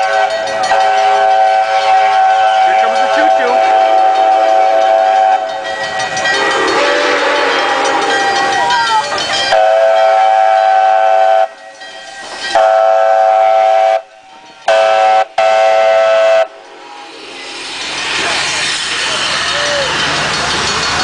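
Steam whistle of the leading Chinese QJ-class 2-10-2 steam locomotive, a steady multi-note tone sounded in long blasts: one long blast, then long, long, short, long, the standard signal for a grade crossing. Between and after the blasts the locomotive and its tender pass close by with a growing rumble and hiss of steam and wheels.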